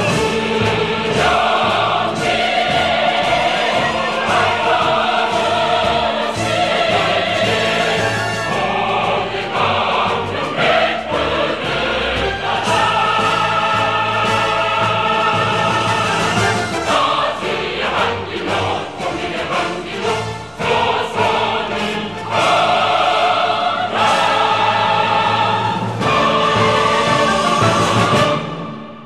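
A choir singing with orchestral accompaniment, in the style of a North Korean patriotic song, loud and sustained through the closing passage.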